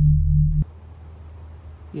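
A steady, low electronic drone sound effect, edited in with a cartoon hypnotised-eyes graphic, that cuts off suddenly about half a second in. Faint background hiss follows.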